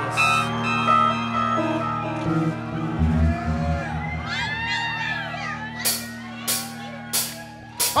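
A live rock band playing a song's intro: held chords with bass notes coming in about three seconds in, then four sharp drum hits near the end, building toward the full band.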